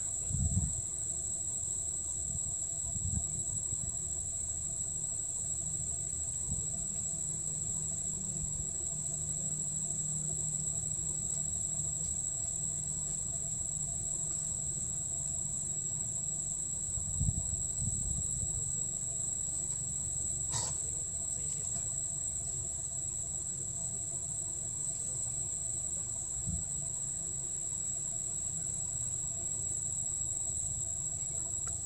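Steady high-pitched drone of insects, continuous with no pauses, over a low background rumble; a single sharp click about two-thirds of the way through.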